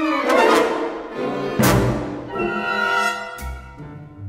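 Orchestral music: brass and strings playing sharp, rhythmic accented chords, with a loud full-orchestra hit about one and a half seconds in, thinning out near the end.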